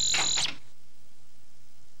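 Electronic buzzing sound effect made of two steady shrill tones, which cuts off sharply about half a second in, leaving only faint tape hum.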